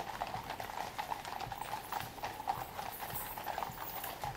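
Clip-clop of the shod hooves of a column of Household Cavalry horses walking on a paved road: many hooves striking in a dense, irregular patter.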